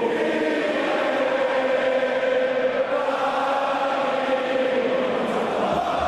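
A large group of voices chanting together in long held notes, several pitches sounding at once. A low thump comes in near the end.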